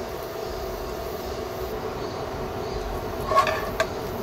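A metal spoon stirring rice in a bowl, with a couple of sharp clinks against the bowl near the end, over a steady machine hum.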